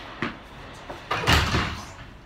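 A short click, then about a second in a louder, dull thump with a brief rush of noise that dies away.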